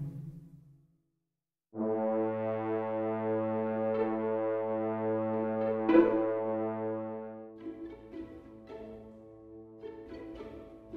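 Orchestral playback from MuseScore notation software. A string passage fades out, and after a short silence a French horn sound holds one long note over light string chords. The horn note gives way near the end to short, detached string notes.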